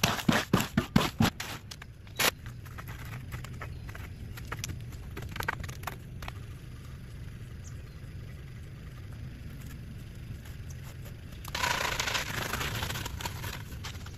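Electric cement mixer running with a steady low hum while wet concrete is scraped and worked into a wooden form. A quick run of sharp knocks comes in the first second, and a louder stretch of scraping comes near the end.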